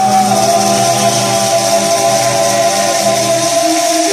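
Live criollo band with guitar playing a marinera limeña, holding long sustained notes that change pitch only at the very end.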